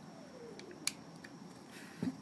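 A black plastic holster belt mount being handled, giving one sharp click a little under a second in and a few faint ticks around it.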